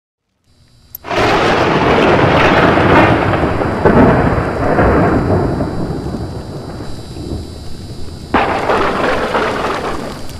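Logo-intro sound effect: a loud rumbling crash that starts suddenly about a second in and slowly fades, then a second sudden crash near the end.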